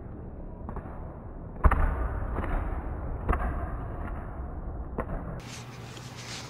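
Sharp thuds of footfalls on a hard sports-hall court floor, echoing in the large hall. There are three main ones: the loudest just under two seconds in, another midway and a lighter one near the end.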